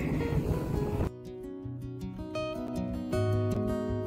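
Plucked acoustic guitar music coming in suddenly about a second in, after a brief stretch of outdoor noise.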